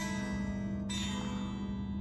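Telecaster-style electric guitar: a wide, stretched chord voicing is struck and left ringing, then struck again a little under a second in and allowed to ring. The full, close-voiced chord has a piano-like sound.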